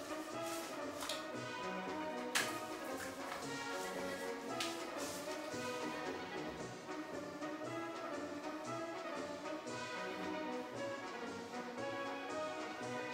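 Instrumental music with brass, playing steadily, with a sharp click about two and a half seconds in.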